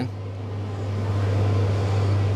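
Steady low mechanical hum, with a rushing noise that grows louder over the two seconds.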